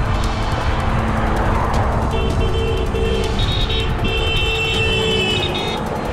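Vehicle horns honking: a run of short beeps about two seconds in, then a longer blast, over a heavy low rumble of road noise.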